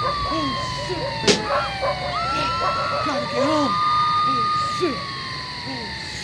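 A siren wailing slowly: its pitch falls, swoops back up, holds and falls again, over a murmur of people's voices, with a single sharp knock about a second in.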